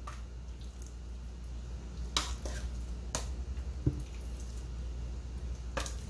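A metal spoon clicking a few separate times against the pot and the plastic blender jar, with one dull thump near the middle, as soft cooked rice is scooped into the jar. A low steady hum runs underneath.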